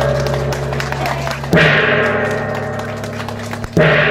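Large hanging bossed gong struck with a mallet, ringing with a long low hum that fades slowly. It is struck again about a second and a half in and once more near the end. The strikes mark the formal opening of the event.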